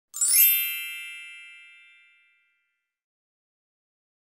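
Bright chime sound effect of a logo sting: one strike right at the start, several high ringing tones that fade out over about two seconds.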